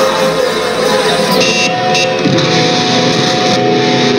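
Live band's electric guitars playing loud, long held, ringing notes as a heavy song gets under way, picked up by a phone microphone in the hall.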